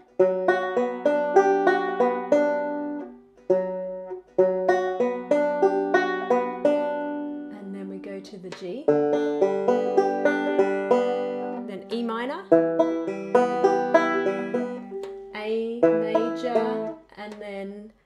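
Five-string banjo fingerpicked in a steady rolling pattern across the fifth, first, third and second strings, with the open fifth (G) string ringing among the notes. The chord changes every few seconds through the chorus progression starting on B minor.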